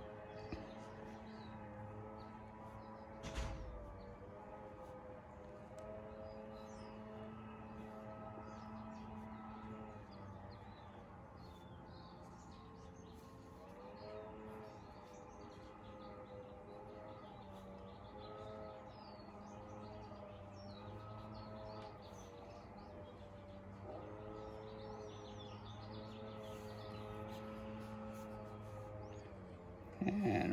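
Faint outdoor background: a steady hum of a few held tones that waver now and then, with small bird chirps over it. A single sharp knock about three and a half seconds in.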